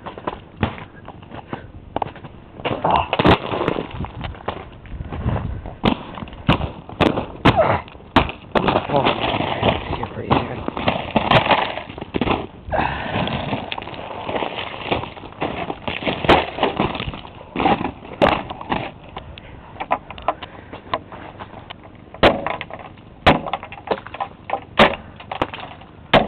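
Irregular crunching and cracking of ice-crusted snow underfoot, with many sharp clicks throughout.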